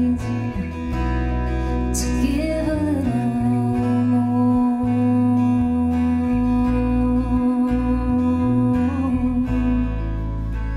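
Live acoustic band music: strummed acoustic guitar and electric bass, with a woman's voice that slides and wavers, then holds one long sustained note for several seconds before letting it go near the end.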